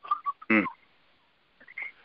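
A brief "mm-hmm" of assent from a man, about half a second in, with a few faint short mouth sounds and pauses around it.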